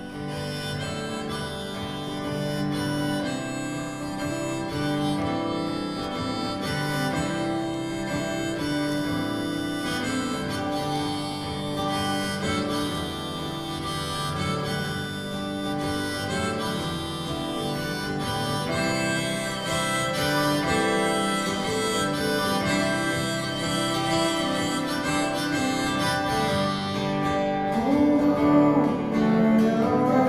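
Harmonica playing an instrumental break over acoustic guitars.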